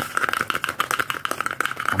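Fingers tapping rapidly on a kraft-paper cup held close to the microphone: a fast, irregular clatter of clicks.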